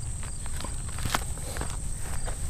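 A few footsteps on a sandy dirt track as a person gets up from a low folding camp chair and walks off, over a steady high chirring of insects in tall summer grass.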